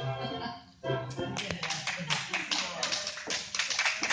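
Recorded tango vals music ends less than a second in. A small audience starts applauding about a second later with dense, steady clapping.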